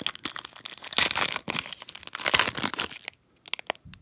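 Foil wrapper of a Topps baseball card pack being torn open at its crimped end and crinkled: dense crackling for about three seconds, then a few separate sharp crinkles.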